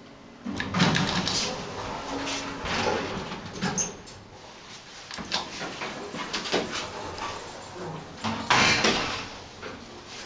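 Vintage Dover elevator in operation: its sliding doors rumble and clunk about half a second in, with more knocks and running noise through the middle. Another loud rumble of the doors comes near the end.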